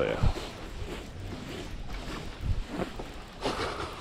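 Wind on the microphone and small waves slapping against a boat hull, with a few soft thumps and a brief rushing noise near the end.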